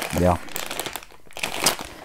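Plastic candy bag crinkling and rustling as it is picked up and turned over by hand.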